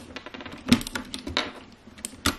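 Plastic keycaps of a mechanical keyboard being pried off by hand: a run of small clicks and rattles, with a sharper click a little under a second in and another at about a second and a half.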